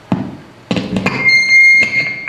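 Homemade two-string fretless tin-can banjo played with a slide: a few sharp plucks of the strings, then from about halfway in a loud, steady, very high-pitched squeal.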